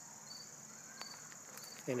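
Faint insect chorus: a steady high-pitched buzz with short chirps repeating at a regular pace, and a faint click about a second in.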